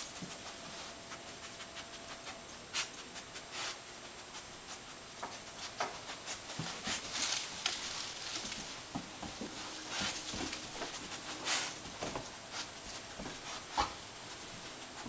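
A bed bug detection dog sniffing along a couch and into a corner while searching for bed bugs: irregular short bursts of breath noise, a few of them louder, with soft shuffling.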